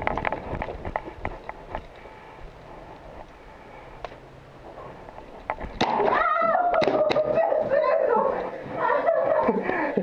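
A quick run of sharp pops, likely paintball marker shots, in the first two seconds. From about six seconds a loud, high-pitched human voice cries out, held and wavering for several seconds before dropping in pitch near the end.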